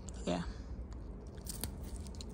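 Pea vine being handled as pods are picked off by hand: soft rustling of leaves and stems, with a couple of sharp snaps about one and a half seconds in.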